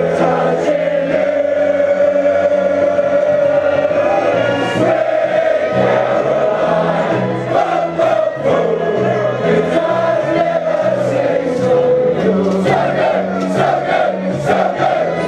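A pub crowd of football supporters singing a chant together in unison, with sharp hits in time near the end.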